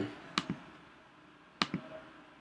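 Two computer mouse clicks, one about half a second in and one near the end, each a quick double tick.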